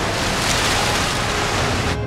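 Loud, steady rushing noise with no clear pitch, a film sound effect.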